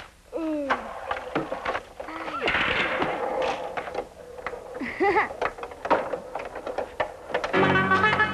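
A toy game machine being played: sharp clicks and knocks with several short falling whistle-like tones. Music starts near the end.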